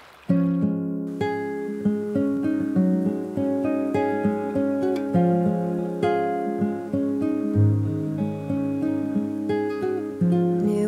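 Background music of an acoustic guitar playing picked notes and strums. It starts abruptly a moment in.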